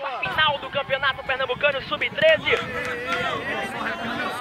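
Continuous, rapid talking, most likely match commentary on the football broadcast, over a steady low background noise that sets in just after the start.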